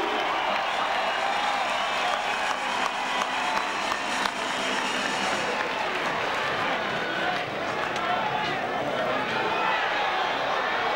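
Large arena crowd shouting and cheering, many voices overlapping at a steady level, with scattered clapping.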